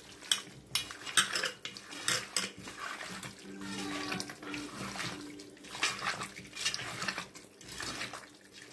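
Raw chicken pieces squelching and slapping wetly as they are kneaded by hand with turmeric and masala paste in a metal pot, with pieces knocking against the pot, in irregular bursts.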